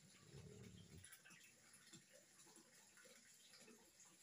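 Near silence: room tone, with a faint low sound lasting about a second near the start.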